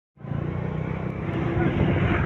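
A motor vehicle engine running with a steady low rumble, over road traffic noise, starting abruptly just after the start.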